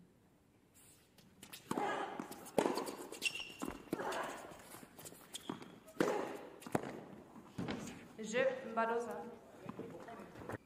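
Tennis rally on an indoor court: racket strikes on the ball every second or so, each with a short vocal grunt from a player, and footsteps on the court. It starts after about a second and a half of near quiet.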